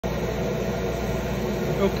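Steady hum of a laser engraver's fans and blower running while the machine sits idle.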